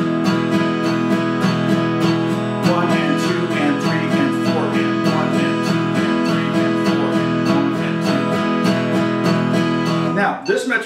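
A 1924 Martin 0-28 acoustic guitar strummed steadily on one held chord, in even down-and-up eighth-note strokes at about three a second, in time with a metronome set to 100 BPM.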